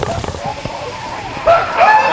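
Water dumped from a large bin splashes down and fades, then people give short high-pitched whoops and shouts, which get louder about one and a half seconds in.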